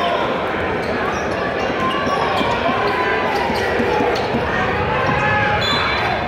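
Basketball being dribbled on a hardwood court, with scattered bounces over steady crowd chatter in a large arena.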